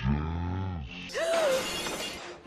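A deep, drawn-out, slowed-down male cartoon voice groaning for about the first second. Then a sudden shattering crash lasts nearly a second, with music under it.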